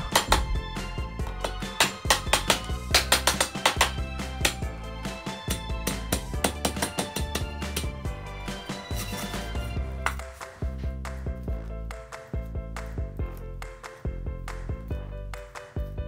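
Kitchen knife cutting and shredding lemongrass stalks on a wooden cutting board: a rapid run of sharp knife strokes against the board, thinning out in the second half, over steady background music.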